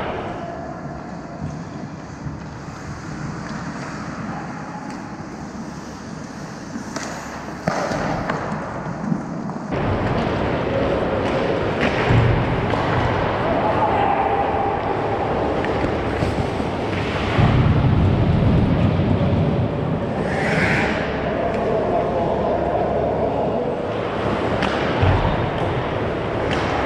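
Ice hockey game sound in an indoor rink: skates scraping the ice and scattered sharp knocks of sticks and puck, with voices calling. It is quieter for the first several seconds and louder from about ten seconds in, as play comes toward the net.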